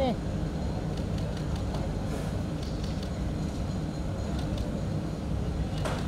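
Steady low rumble of an idling engine, with faint voices in the background.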